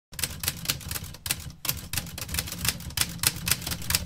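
Typewriter keys clacking in a rapid, uneven run of strikes, with a brief pause about a second and a half in: a typing sound effect under on-screen text.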